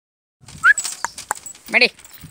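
A short rising squeak, then a few sharp metallic clinks of a dog's steel chain against a perforated metal platform as the puppy shifts on it, with a voice calling near the end.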